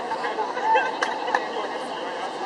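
Indistinct chatter of many people talking and calling out at once across a large playing field, with no single voice clear. Two short sharp knocks stand out about halfway through.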